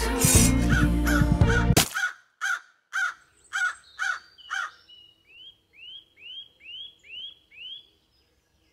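Music cuts off about two seconds in. A crow then caws about six times in quick succession, about two a second, followed by a fainter run of six higher, arched calls.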